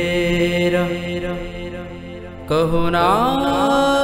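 Gurbani shabad kirtan music between sung lines: steady held notes over a low drone, then about two and a half seconds in a louder phrase enters with notes sliding upward before settling.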